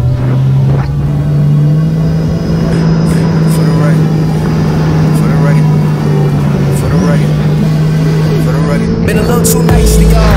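Sea-Doo RXP-X 300 jet ski's supercharged three-cylinder engine running at a steady cruise. Its drone holds one pitch, stepping up slightly about a second and a half in.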